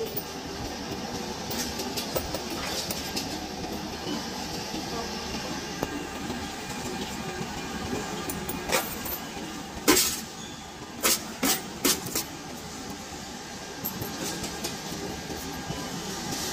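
Coinstar coin-counting kiosk running steadily as coins are fed into it, with a few sharp clinks of coins dropping in about nine to twelve seconds in.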